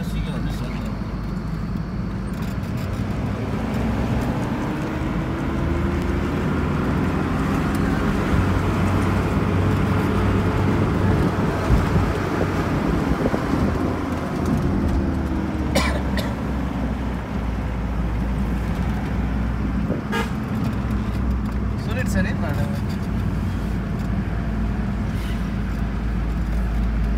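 Mitsubishi Pajero driving along a winding road, heard inside the cabin: steady engine hum and road noise, with a faint tone that slowly rises and then falls in the middle. A few brief sharp sounds come late on.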